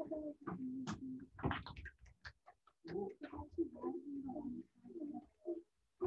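Pitched vocal noises coming through a participant's open microphone on a video call, in two stretches with sharp clicks between them. These are unwanted noises interrupting the class.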